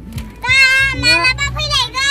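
A young child calling out in a high voice, a few drawn-out calls, over background music with a steady low bass.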